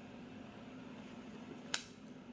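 Faint steady background hum with a single sharp click near the end, made by fingers pressing and handling stickers on a planner page.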